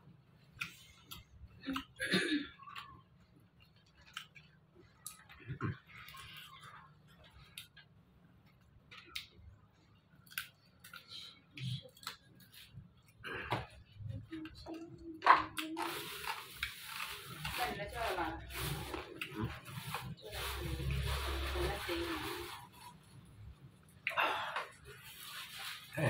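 Close-miked eating sounds: scattered mouth clicks, chewing and lip smacks from a person eating rice by hand, with one sharp click about fifteen seconds in. In the last third a voice comes in over a steady hiss.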